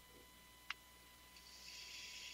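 Near silence between speakers, broken only by one faint click about a third of the way in and a faint hiss near the end.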